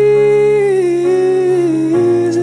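Slow acoustic ballad cover: a single voice holds one long note, the melody stepping down twice, over sustained low accompaniment chords.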